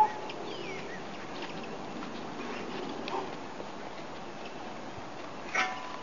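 Quiet outdoor background hiss with a few faint bird chirps in the first second and a single brief click at the very start.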